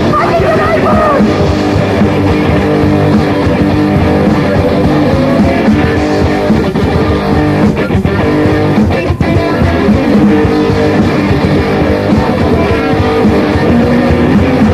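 Punk rock band playing an instrumental passage: loud electric guitars over bass and drums, with the tail of a shouted vocal line in the first second.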